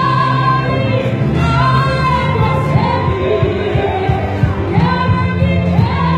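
A church gospel choir singing, its voices holding long notes that slide from one pitch to the next.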